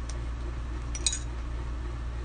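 A stir stick clinks once against a small jar of shimmer chalk paste about a second in, as the separated paste is mixed, over a steady low hum.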